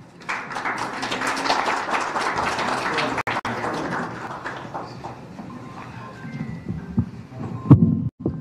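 Audience applauding, the clapping swelling in the first couple of seconds and dying away after about four. Near the end comes a series of thumps from a microphone being handled on its podium stand.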